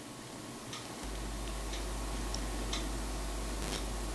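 Faint ticking, about once a second, over a low steady hum that comes in about a second in.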